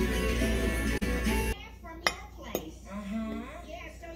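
Music that cuts off suddenly about a third of the way in, followed by two sharp clinks of a metal fork against a plate under faint voices.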